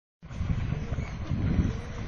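Wind buffeting the microphone in uneven low rumbles.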